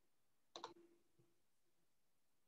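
Near silence with a faint, quick pair of clicks about half a second in and a softer click just after a second: someone working a computer.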